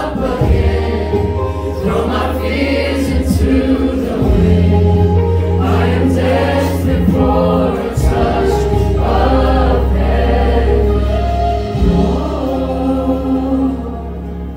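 Live worship band playing a slow song, several voices singing together over guitars and a bass line whose long held notes change about every four seconds.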